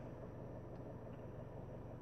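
Faint, steady low hum and hiss of a stationary car's cabin, with no distinct events.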